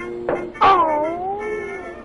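A pistol fires a single short pop on an early-1930s film soundtrack, followed at once by a loud yelping howl that starts high and falls in pitch over about a second: the cry of the shot dog character. Background music plays throughout.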